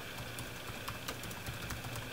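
Typing on a computer keyboard: a quick run of keystroke clicks over a steady low hum.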